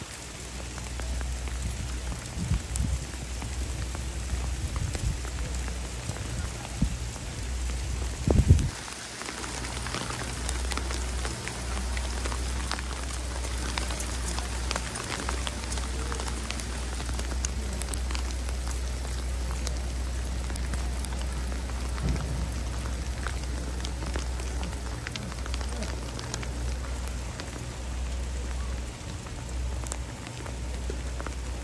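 Small hail pellets falling on the street and canal in dense fine ticking, with wind buffeting the microphone in a steady low rumble. There is one brief loud thump about eight seconds in.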